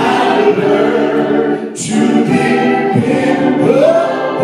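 A male lead singer with a small gospel choir singing, with a short break about two seconds in and a voice sliding up in pitch near the end.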